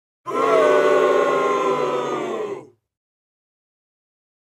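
A loud, drawn-out vocal yell that sounds like several voices together, lasting about two and a half seconds. It sags slightly in pitch and then cuts off.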